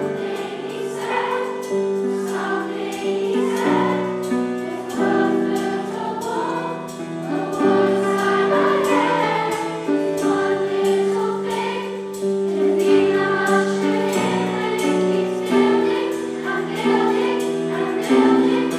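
A massed choir of school students singing a song in parts, with held notes, accompanied by a band of piano and guitars.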